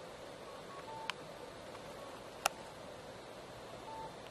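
Faint electronic beeps in a quiet car interior, a short higher note followed by a lower one, with two sharp clicks about a second apart, the second the loudest sound.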